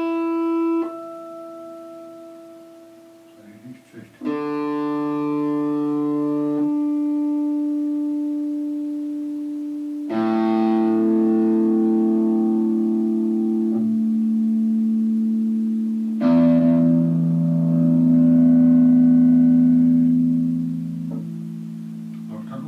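Electric guitar on old, rusted strings, chords or notes struck one at a time and left to ring for several seconds each, with fresh strikes near the start and at about 4, 10, 16 and 21 seconds.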